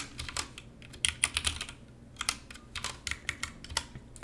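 Computer keyboard being typed on: several quick bursts of keystrokes with short pauses between them, typing out a line of code.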